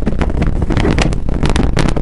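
Handling noise from a handheld camera being moved about: a steady low rumble with many irregular clicks and knocks.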